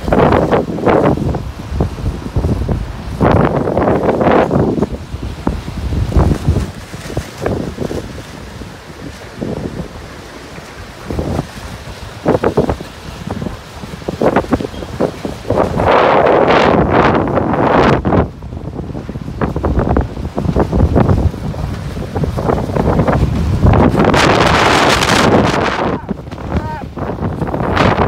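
Strong storm wind blowing across a phone's microphone in loud gusts, with quieter lulls between the surges.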